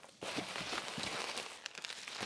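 Plastic bubble wrap rustling and crinkling as it is pulled up out of a cardboard box, a continuous crackle that eases off near the end.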